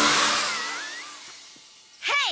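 Cartoon whoosh of flying scooters rushing past overhead, loudest at the start and fading away over about a second and a half.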